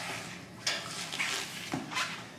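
Sheet-metal side access door of an industrial vacuum's steel cabinet being handled and swung open, with a sudden knock about two-thirds of a second in and another just before two seconds.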